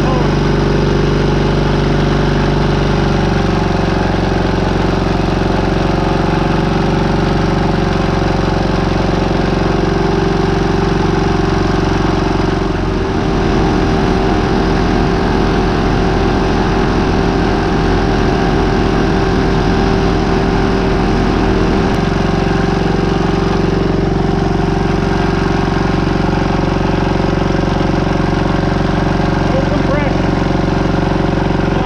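1942 Caterpillar D2's two-cylinder gasoline pony engine running steadily. For about nine seconds in the middle, a rapid low pulsing joins in and then stops.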